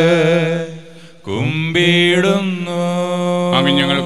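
A priest chanting a Malayalam liturgical prayer of the Syro-Malabar Qurbana in long held notes. There is a short break about a second in, then a new note slides up and is held.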